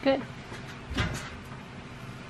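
A single dull thump about a second in, from a child climbing down a metal bunk-bed ladder.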